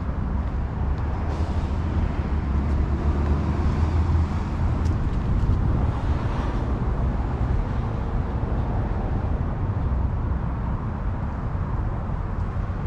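Outdoor ambience: a steady low rumble with no distinct events. A wider hiss swells from about one second in and fades near the seventh second.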